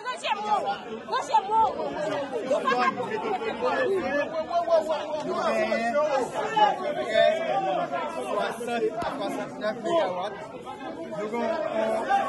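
Several people talking at once at close range: overlapping, unclear chatter of a small crowd.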